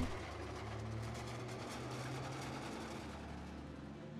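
A steady low engine-like rumble with a held hum, unchanging throughout.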